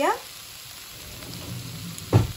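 Boiled potato pieces and ground spices sizzling in oil in a pan: a steady, even hiss.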